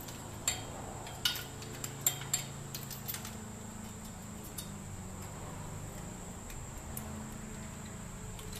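Metal clinks of a spark plug socket, extension and ratchet being worked onto a spark plug in a Holden 3.8 V6, with several sharp clicks in the first three seconds as the slipping socket is reseated on the plug. After that only a steady low hum.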